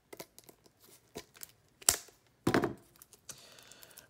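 Plastic shrink wrap crinkling and tearing as it is worked off a small metal card tin: a run of irregular sharp crackles, the loudest snap about two seconds in.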